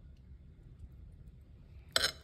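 Quiet room tone with a low steady hum, broken near the end by one short, sharp click.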